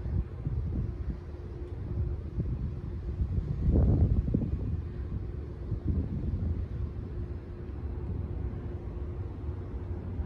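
Wind buffeting a phone microphone outdoors, a fluctuating low rumble that swells strongly about four seconds in, with a faint steady hum underneath.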